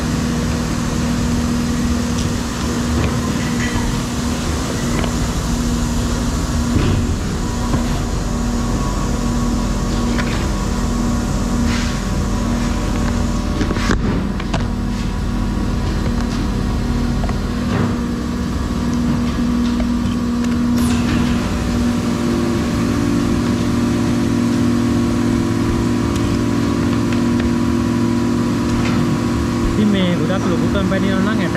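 Steady, loud hum of factory machinery in a plastics plant making kimchi buckets, with scattered sharp clacks of plastic parts being trimmed and stacked by hand.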